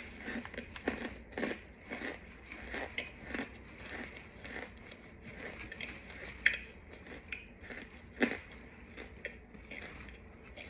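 Gloved hands squeezing and crushing crumbly clumps of powdery white starch on parchment paper: irregular soft crunches, a few a second, with a sharper crunch near the middle and a louder one near the end.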